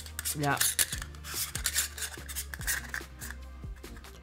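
Metal step-up adapter rings being threaded by hand onto a camera ND filter: a run of small, irregular metallic clicks and scrapes as the threads are turned and seated.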